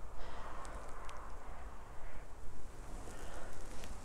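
Quiet outdoor background: a steady low rumble with faint rustling and a few small ticks.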